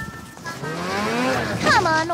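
Cartoon motor-vehicle engine sound effect, rising in pitch for about a second and then dropping away. A character's voice cuts in near the end.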